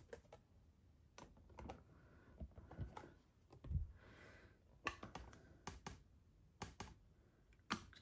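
Faint, scattered light clicks and taps of a clear stamp and plastic crafting tools being handled on a stamping platform, with a soft brief rustle about halfway through.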